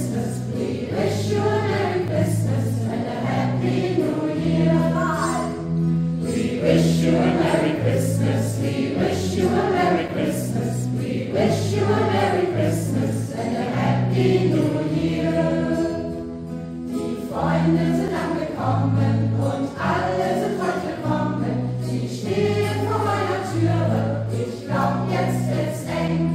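A group of voices singing a Christmas carol together, accompanied by strummed acoustic guitars and a hand drum keeping a steady beat.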